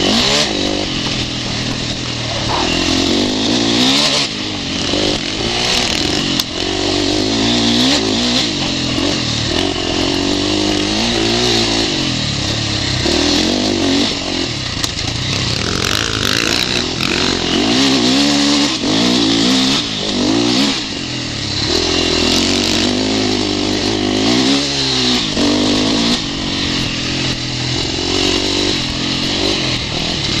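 2011 KTM 450SX single-cylinder four-stroke motocross engine being ridden hard over a dirt track. It revs up and drops back again and again, heard close from a camera mounted on board.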